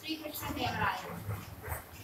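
Chalk writing on a blackboard, with short sharp strokes, under a woman's voice speaking.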